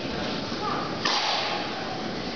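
A tennis ball struck with a racket about a second in, the crack ringing on in the large indoor hall.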